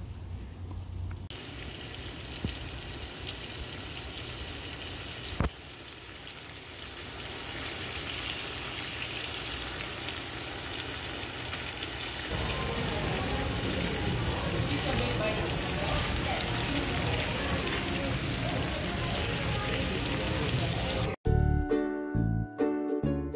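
Steady ambient noise over a run of short cuts: open-air noise first, then from about twelve seconds a denser crackling, sizzling hiss of a hot pot of broth bubbling amid restaurant chatter. Background music cuts in just before the end.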